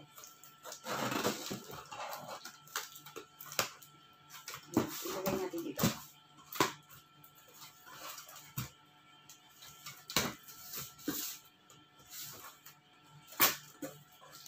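A knife slitting the packing tape on a cardboard box, then the cardboard flaps being pulled open: a run of sharp cracks, scrapes and rustles, the loudest crack near the end.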